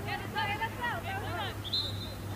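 Voices call out across the pitch, then a referee's whistle blows once, a short steady blast near the end. It is a late whistle stopping play.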